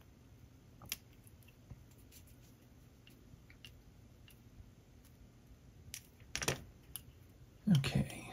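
Faint, scattered clicks and taps of a small screwdriver and the metal parts of an HO scale locomotive kit being handled as a screw is driven to hold the body on the chassis, with a louder pair of clacks about six seconds in.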